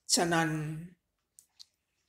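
A single spoken word of Thai scripture reading, then a pause in which two faint, short clicks come a fraction of a second apart.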